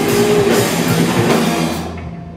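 Live rock band with electric guitars, bass and drum kit playing the last bars of a song at full volume. Near the end the band stops together, leaving a low note ringing.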